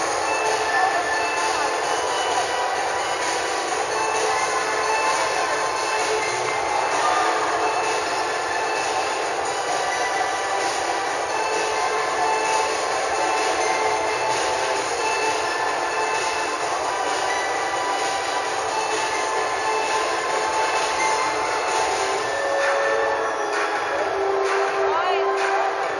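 Steady, dense noise of a crowd lining a street parade, with a few faint held tones running through it.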